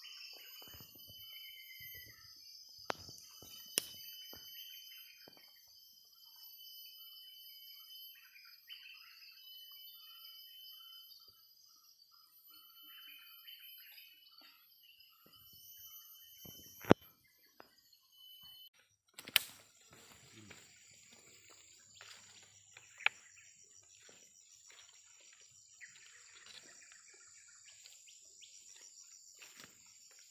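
Outdoor ambience: a steady high-pitched insect drone with a short bird chirp about two seconds in. A few sharp snaps or clicks stand out, the loudest just past the middle, and the later half has rustling footsteps on dry leaf litter.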